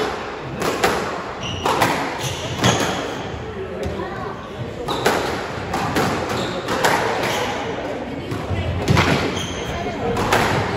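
Squash rally: the ball is struck by the rackets and hits the walls and glass, a sharp crack every second or so, each echoing around the court. Short high squeaks of court shoes on the wooden floor come in between the hits.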